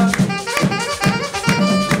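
Live band playing a short instrumental stretch between sung lines: saxophone over drums keeping a steady beat.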